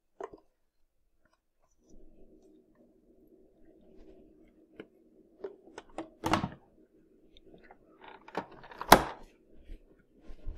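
Plastic parts of a centrifugal juicer knocking and clunking as pulp is tipped back into the feed chute and the lid and pusher are fitted, with two louder thuds, about six and nine seconds in. A faint steady hum runs underneath from about two seconds in.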